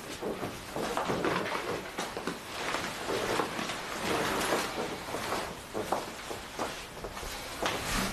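Clothes and bedclothes rustling irregularly as a person undresses and gets onto a bed.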